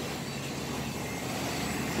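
A steady mechanical rumble and hiss, as of a motor running, growing slightly louder near the end.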